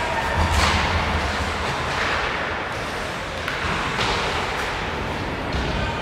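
Ice hockey play on the rink: a steady arena hum with several sharp knocks of sticks, puck and bodies against the boards, the loudest about half a second in.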